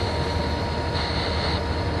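CSX GP40-2 diesel-electric locomotive running with a steady low rumble as it creeps forward slowly.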